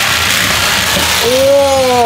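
Handheld electric jigsaw running steadily as its blade cuts through a plastic toy sword. In the second half a man's drawn-out "ooh" rises over the saw as the cut goes through cleanly.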